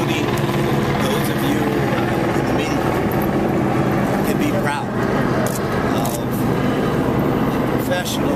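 A man speaking into microphones over a steady low engine drone.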